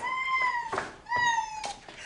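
A woman's exaggerated high-pitched crying: three drawn-out wailing cries, each falling slightly in pitch.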